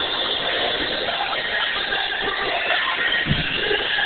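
Steady roller-rink din: a dense wash of background noise from the rink, with music faintly under it.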